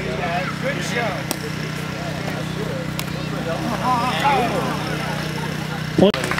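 Background voices over a steady low motor-like hum, with a couple of short sharp taps.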